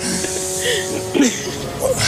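A short electronic studio jingle: a buzzy chord of several steady tones held for just over a second, then cut off, with brief snatches of voice over it.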